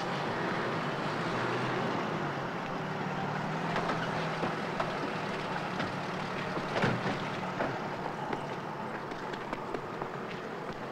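Car engine idling with a low steady hum that fades out about halfway through, over a steady background noise. A few knocks follow, the loudest about seven seconds in, just after the driver climbs out with the door open: a car door thudding shut.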